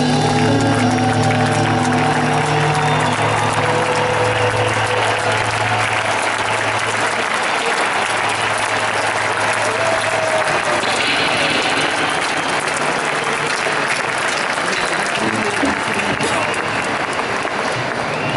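Concert audience applauding and cheering as the band's last chord rings out and dies away over the first six seconds or so, leaving the applause alone.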